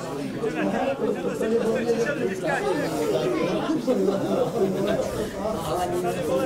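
Several people talking over one another close to the microphone, an unbroken stream of spectator chatter.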